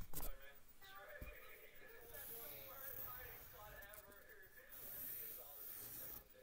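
Faint, indistinct voice talking too quietly for any words to come through, with a couple of soft knocks in the first second or so.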